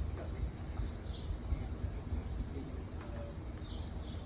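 Outdoor background: a steady low rumble with a few faint, short bird chirps, one about a second in and one near the end.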